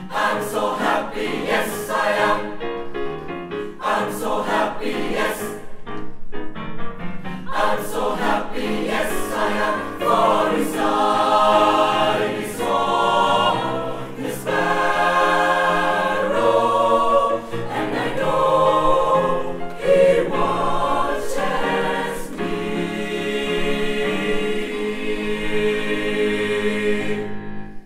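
Mixed choir of men's and women's voices singing loudly, in short clipped rhythmic syllables for the first several seconds, then in longer sustained chords toward the end.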